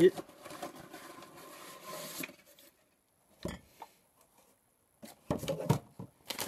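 Cardboard box and paper packing being handled and rummaged through, a rustling that runs for about two seconds. A couple of small knocks follow about three and a half seconds in, then a short burst of rustling near the end.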